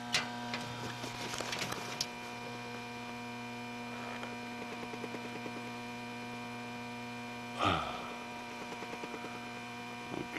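Steady electrical hum made of several held tones, with a click at the start and one brief louder burst about three-quarters of the way through.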